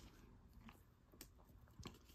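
Near silence: room tone with a few faint, short clicks from trading cards and a plastic card sleeve being handled.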